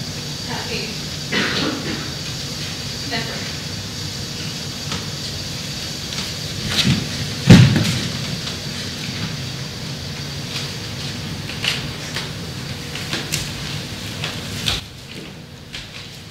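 Steady low hum in a theatre, with scattered knocks and thumps from performers moving over the wooden stage set. The loudest is a single heavy thump about seven and a half seconds in.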